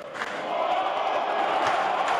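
Football stadium crowd chanting and cheering, swelling about half a second in and then staying loud.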